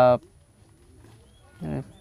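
Speech with a pause: a voice draws out its last word at the start, about a second and a half of faint background follows, and speech resumes near the end.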